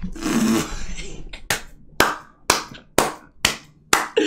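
A person clapping hands in slow, evenly spaced claps, about two a second and seven in all, after a short burst of laughter at the start.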